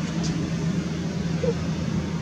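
A steady low mechanical hum, like an engine running.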